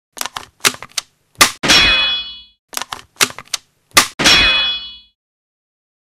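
A produced intro sound effect played twice: a quick run of sharp metallic clicks, then a hard crack and a clang whose bright metallic ring dies away over about a second. After the second round it cuts off about five seconds in.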